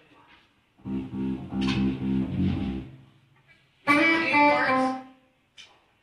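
Guitar played in two short goes: a low chord rings for about two seconds, then after a pause a brighter chord sounds for about a second.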